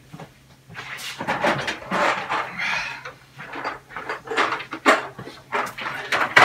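Plastic PVC pipe fittings clattering and rattling in a plastic tub as they are rummaged through and carried, in a run of irregular knocks and rattles.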